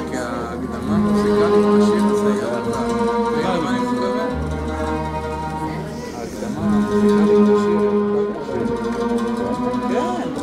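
Arabic orchestra playing: bowed strings holding long notes, with wavering melody lines above, over a deep sustained bass that drops in and out; the same phrase comes round twice.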